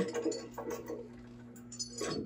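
A few faint, light taps of a hammer striking a rotten wooden board, over a low steady hum.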